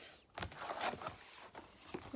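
Toy-car packaging of plastic and cardboard rustling and crinkling as it is handled and moved aside, with a few sharp crackles about half a second to a second in.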